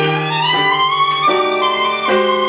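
A solo violin playing a slow melody with piano accompaniment; the violin line slides upward through the first second or so while the piano chords underneath change about every two-thirds of a second.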